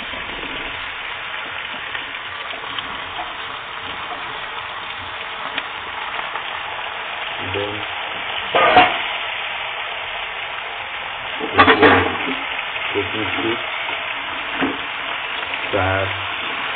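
Chunks of potato and eggplant sizzling steadily as they fry in hot oil in a pan, with two sharp utensil knocks about 9 and 12 seconds in.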